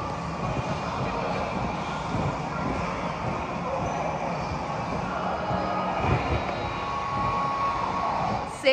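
Steady rumbling noise of gym machinery running, with a faint high tone held briefly near the end.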